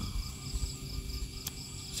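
Insects chirping steadily in the background, a high pulsing trill with a thinner steady whine above it. One sharp click about a second and a half in.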